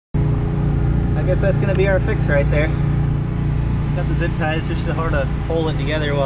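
An engine running steadily in a low, even drone, with people talking over it.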